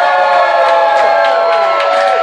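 A group of bar patrons singing out one long held note together, several voices at slightly different pitches, some sliding down near the end.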